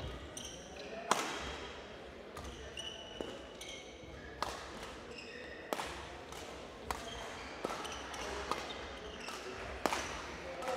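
Badminton rally: sharp racket strikes on the shuttlecock, about seven in all, the hardest about a second in, with short shoe squeaks on the court floor between them.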